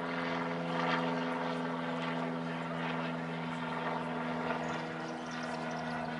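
A steady engine drone that holds one even pitch, with a faint background hum of the street.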